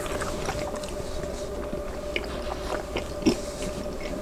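Close-miked chewing of grilled asparagus, with scattered small wet mouth clicks and one louder click a little past three seconds in. A steady low hum runs underneath.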